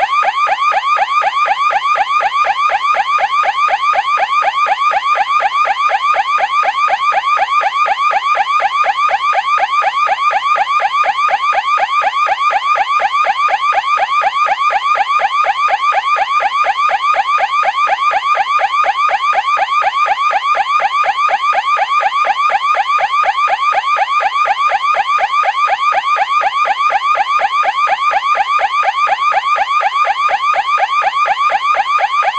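Electronic alarm sounding: a loud, rapid pulsing tone repeating many times a second, unchanging throughout.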